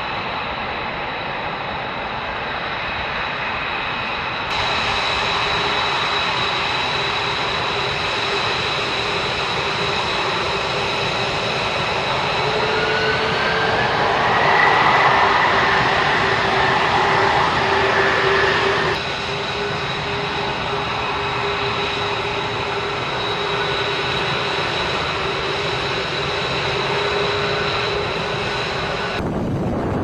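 Jet fighter engines running: a steady rush with a high turbine whine. About 13 seconds in it grows louder and the whine rises in pitch, then it drops back suddenly about 19 seconds in. The level jumps abruptly at a few points, where the sound is cut.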